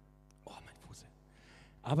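A lull with faint breathy voice sounds and a faint steady hum, then a man starts speaking near the end.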